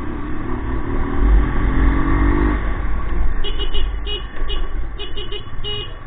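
Motorcycle being ridden, its engine note rising steadily for the first couple of seconds, over a heavy wind rumble on the microphone. In the second half, a quick series of short high beeps.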